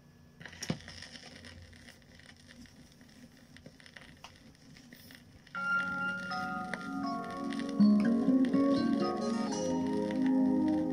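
Turntable stylus set down on a 45 rpm vinyl single: a sharp thump as it lands, then the lead-in groove's surface hiss and crackle for about five seconds, after which the song's intro music starts playing from the record.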